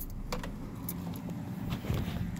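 Light clicks and jingles from a key ring hanging from a Honda Civic's ignition, over the car's steady low cabin hum.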